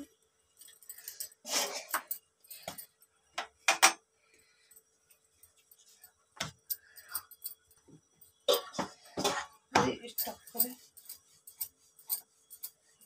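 Scattered short clinks and taps as a stuffed dough ball is pressed flat by hand on a wooden chakla board: bangles jingling on the working wrist and light knocks on the board, loudest in clusters near the start, around four seconds in and from about eight to ten seconds, with brief bits of voice in between.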